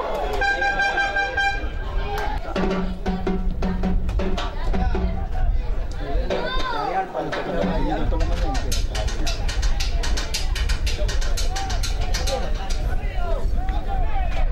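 Football crowd noise: voices shouting, a horn blowing a held note near the start and a lower one a few seconds in, and rapid percussion through the second half.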